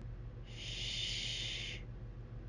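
A woman's drawn-out "shhh" hush, a steady hiss held for just over a second.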